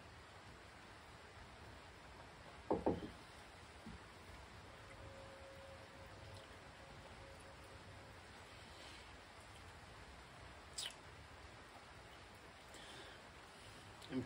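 Quiet background between sips of beer, broken about three seconds in by a brief cluster of soft low knocks, and near eleven seconds by one short high click.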